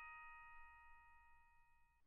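The last ringing notes of chime-like background music dying away to near silence: several high bell-like tones held together and fading out.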